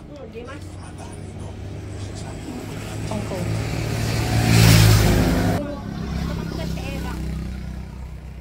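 A road vehicle passing close by, its engine and road noise building to a loud peak about four and a half seconds in, then cutting off suddenly. A steady low hum follows.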